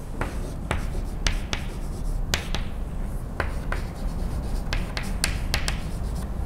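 Chalk writing on a blackboard: about a dozen sharp taps and clicks of the chalk striking the slate as a word is written, irregularly spaced.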